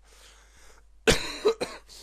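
A man coughs about a second in: a sharp burst followed by a second, shorter one about half a second later.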